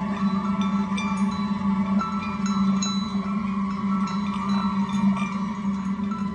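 Background music score: a held low drone with sustained mid tones, and short, high ringing notes scattered over it.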